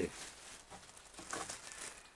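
Thin black plastic bag crinkling and rustling in the hands as it is folded and unwrapped, in a few short, soft rustles.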